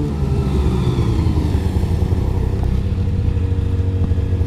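Arctic Cat Catalyst 600 snowmobile's two-stroke engine running steadily, its pitch easing down slightly in the first second or so and then holding.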